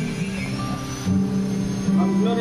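Music with held notes, an acoustic guitar being played.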